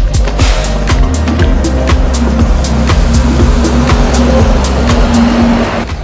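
Music with a steady beat over the engine and road noise of a moving double-decker bus, heard from inside on the upper deck.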